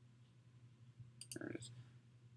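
Near silence: room tone with a faint steady low hum, broken about a second in by a faint click and a single spoken word.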